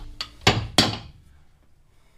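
Caulking iron being struck to drive cotton caulking into a seam between hull planks: a faint knock, then two sharp knocks about a third of a second apart.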